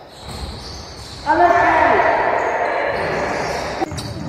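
A basketball bouncing on a wooden gym floor during play, with voices shouting in the hall, loud from about a second in.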